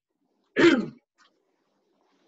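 A man clears his throat once, a short, sharp sound with falling pitch about half a second in.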